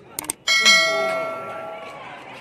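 Subscribe-button sound effect: a quick double mouse click, then a bell dings once and rings out, fading over about a second and a half.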